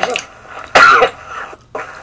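A man's single short cough, about a second in, then quiet.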